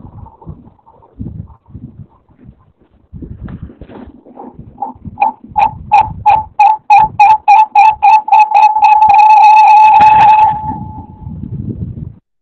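A high-pitched tone sounded in short beeps that come faster and faster, then run together into one steady tone for about a second and a half before stopping. Faint low background noise comes from an open microphone.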